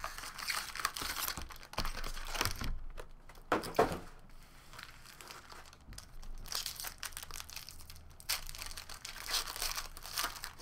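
Foil wrappers of trading-card packs crinkling as the packs are handled and stacked, and a pack being torn open. The crinkling comes in irregular bursts, loudest just before four seconds in, and picks up again over the last three seconds.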